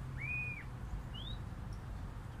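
A garden bird calling: one clear arched whistled note, then a short rising note about a second in, over a low steady background rumble.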